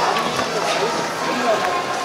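Footsteps crunching on a gravel floor, with people talking in the background.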